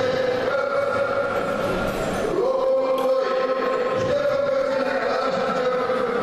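Music of slow singing, with long held notes of about two seconds each that change pitch only slightly from one to the next.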